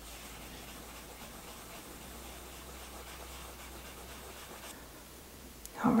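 Faint, steady scratching of a white soft pastel stick rubbed across textured watercolour paper as a halo is drawn in.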